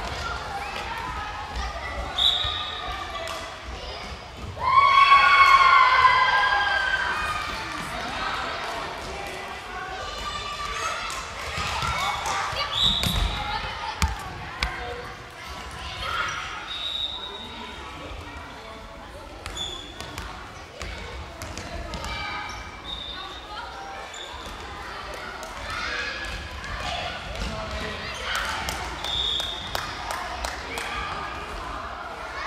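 Children playing dodgeball in a sports hall: a ball bouncing on the hall floor and indistinct children's voices, echoing in the large room. A loud shout comes about five seconds in, and there are short high squeaks a few times.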